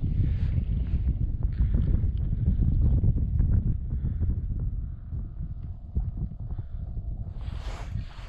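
Wind buffeting the microphone: a low, uneven rumble with a few faint knocks, and a brief rustle near the end.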